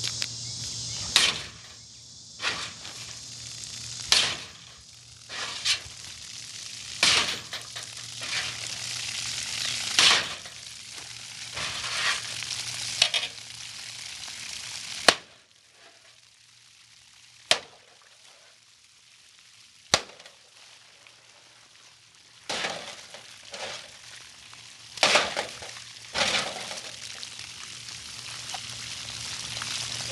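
Darksword Armory Carpathian steel sword chopping and stabbing into a galvanized steel trash can full of water: a string of sharp metallic hits at irregular intervals, about fifteen in all, with a quieter spell in the middle broken by two single hits. Water hisses and splashes out of the cuts between the blows.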